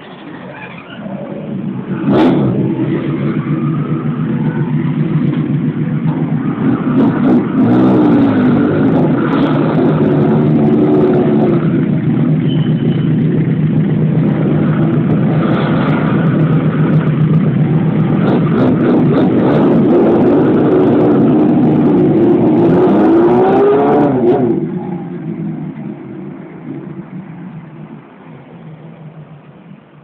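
Honda CB400F 408cc inline-four and a second, larger motorcycle running, with the throttle blipped several times so the revs rise and fall. About three quarters of the way through the sound drops and fades as the bikes pull away.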